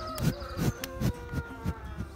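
An insect buzzing close to the microphone in one steady tone that slowly falls in pitch, over a few soft low puffs of breath from a bull snuffling right at the phone.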